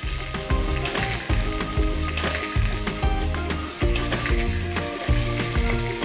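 Mackerel fillets sizzling in hot oil in a frying pan, over background music with a steady bass line.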